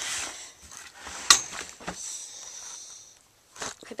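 Rustling and handling noise from a hand-held camera and things being packed into a bag, with a sharp click about a second in and a softer one shortly after.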